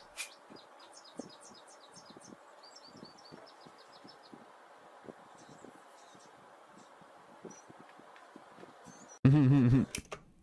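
Small birds chirping faintly through background hiss, with a quick run of high chirps in the first few seconds and scattered chirps after. A sudden loud voice breaks in about nine seconds in.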